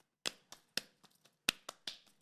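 Two people's hands clapping and slapping palm to palm in a hand-clapping game: a run of about seven sharp claps, three evenly spaced, a short pause, then three quicker ones near the end.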